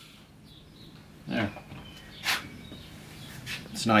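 Quiet workshop with only a short vocal sound about a second and a half in and a brief hiss about a second later. Speech begins near the end.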